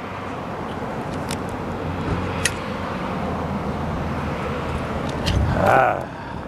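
A motor vehicle engine running nearby with a steady low hum, along with a few light clicks.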